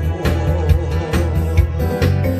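Backing music for a Korean pop song, with a steady drum beat of about two strokes a second over bass; no voice is clearly heard over it.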